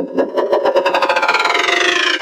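Sound of a Pepsi logo animation, heavily distorted by audio effects: a loud, dense buzzing with rapid even pulsing and high tones gliding downward.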